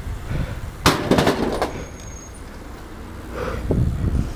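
Specialized S-Works Demo 8 downhill mountain bike landing hard on paving about a second in: a sharp impact followed by a short clattering rattle from the bike. Tyres then roll over the paving tiles with a steady low rumble, and a few more knocks come near the end.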